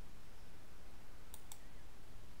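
Two quick computer mouse clicks in close succession about a second and a half in, over a faint steady low hum.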